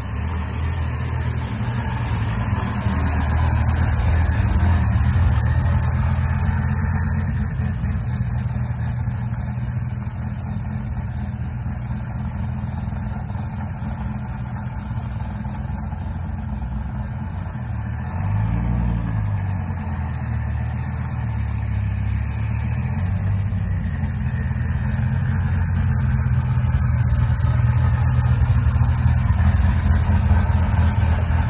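Customised classic American muscle cars' engines running with a deep, steady rumble. A little past halfway there is one quick rev that rises and falls.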